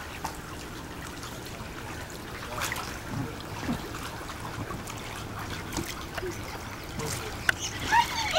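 Pool water lapping and splashing gently around a child floating in an inflatable swim ring, with a few small splashes.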